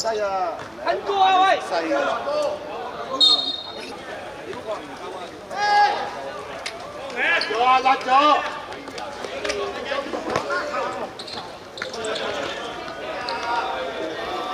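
Players' voices shouting and calling across a hard outdoor football court, mixed with sharp thuds of a football being kicked and bouncing on the hard surface.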